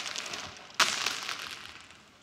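Jelly beans spilling and scattering, a crackly rattle of many small hard candies that starts suddenly just under a second in and dies away.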